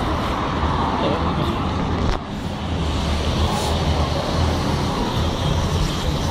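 Steady road traffic noise: cars passing on a city road, with a continuous low rumble.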